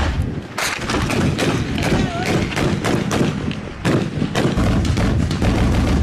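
Firefight gunfire: many rapid, irregular, overlapping shots from small arms, with men's voices.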